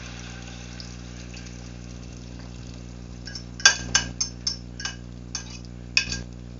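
A metal utensil tapped against the rim of a bowl to knock off the last of the beaten egg: a series of about seven sharp clinks starting about halfway through, the first the loudest. A steady low hum runs underneath.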